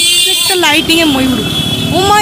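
People's voices talking over a motorcycle engine running close by.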